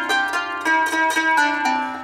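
Qanun (Arabic plucked zither) played with metal finger picks: a short run of plucked notes, about four a second, each left ringing. The run shows a scale with the E half-flat quarter tone, set with the instrument's tuning levers.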